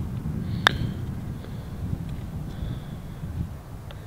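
A single sharp click of a Scotty Cameron Newport 2 putter striking a golf ball, less than a second in, over steady low wind noise on the microphone.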